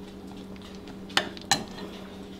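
A metal spoon clinking twice against a dish, two sharp clicks about a third of a second apart, over a steady low hum.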